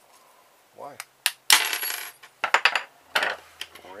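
Small metal parts from a plug, brass terminals and screws, dropped and clattering onto a wooden table: a sharp click, then a louder clink that rings on briefly about a second and a half in, followed by a few quick clicks.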